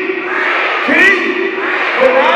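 A man shouting into a microphone over crowd noise, with a fresh shout starting about a second in.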